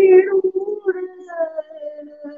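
A male voice singing a wordless vowel in dhrupad style. It is loudest at the start, sliding up in pitch into a held note, then moves on to a higher, softer note about halfway through.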